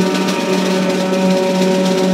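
Live free-improvised jazz: sustained, droning tones held by the ensemble over a steady wash of cymbals and drum kit. The lowest tone breaks off briefly about every second and a half.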